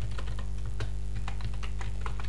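Computer keyboard being typed on: a quick, uneven run of keystroke clicks as a word is entered.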